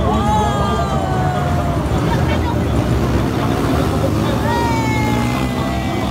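Motor whine passing by twice, each time sliding slowly down in pitch, over a steady low rumble.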